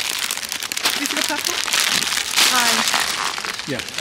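Plastic film wrappers of instant-noodle multipacks crinkling and rustling as they are grabbed and handled, with a few brief words.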